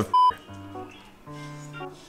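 A short censor bleep, a single pure high tone, right at the start, covering the word cut off after "mother". Then soft background music of held notes in short phrases.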